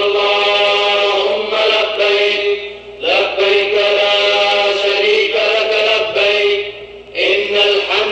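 A solo voice chanting in long, drawn-out phrases, breaking off briefly about three seconds in and again about seven seconds in.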